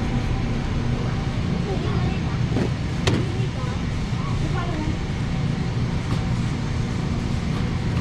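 Shopping cart rolling and rattling over a concrete store floor, with one sharp click about three seconds in, over the steady hum and distant voices of a busy warehouse store.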